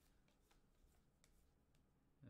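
Near silence, with a few faint ticks of trading cards being flipped through by hand.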